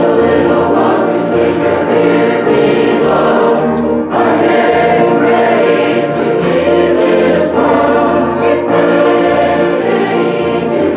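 A youth choir singing a gospel hymn together, with sustained notes that carry on without a break.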